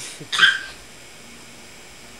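A single short, high-pitched squeal or yelp about a third of a second in, lasting under half a second.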